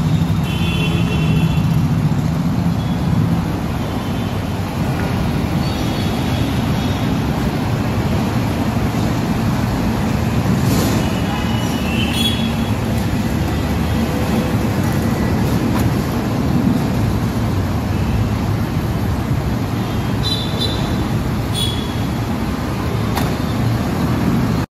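Steady road traffic noise, with a few brief high tones now and then.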